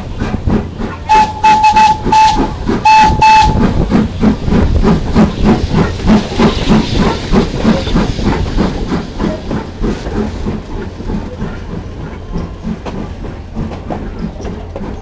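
Steam locomotive whistle sounding several short blasts, then the locomotive's exhaust chuffing in an even rhythm of about three beats a second, fading toward the end.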